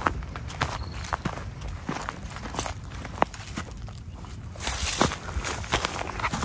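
Footsteps through dry grass and fallen leaves, with irregular crackles and snaps of dry vegetation underfoot and a louder rush of noise about five seconds in.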